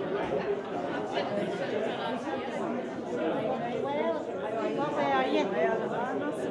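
Crowd chatter: many overlapping voices talking at once in a large room, with a few voices standing out more clearly in the second half.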